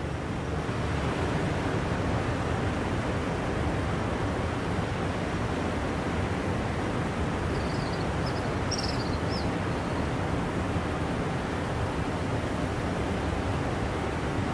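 Steady outdoor background noise, an even rushing hiss, with a few faint high chirps about eight to nine seconds in.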